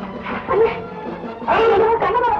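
Background score of an old film soundtrack, with two short, loud, yelping cries over it, one about half a second in and a longer one near the end.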